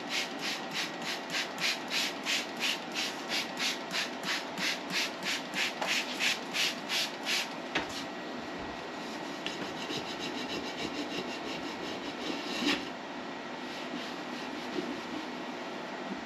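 Trigger spray bottle squirted over and over in a steady rhythm, about three sprays a second, for the first eight seconds. After that, quieter continuous rubbing, and near the end a kitchen sponge scrubbing the bottom of a frying pan.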